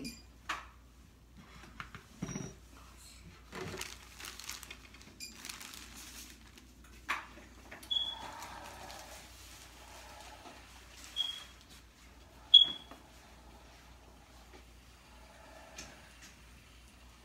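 Quiet handling sounds: a plastic bag rustling and light clicks and knocks on a table, with three short high-pitched beeps in the second half.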